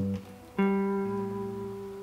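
Electric guitar: a single clean note plucked about half a second in and left ringing as it slowly fades. It is a G root note within the third-fret G major barre chord shape.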